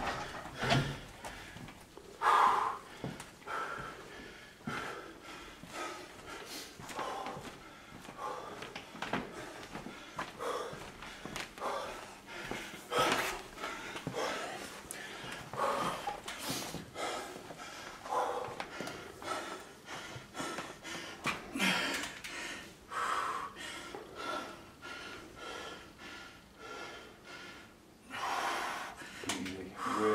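A man breathing hard in short, heavy breaths every second or two, recovering from an all-out set on a weight machine.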